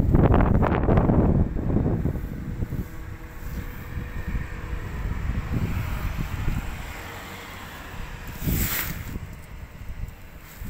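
Wind buffeting the microphone as an uneven low rumble, strongest in the first two seconds, with a brief rustle near the end.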